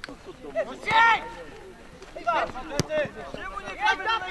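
Men shouting across an outdoor football pitch, with a loud cry of "Nie!" about a second in and more calls later. A single sharp knock sounds just before three seconds in.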